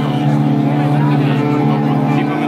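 A rock band playing live through a PA in a song's instrumental intro: a loud, steady low drone held with little change.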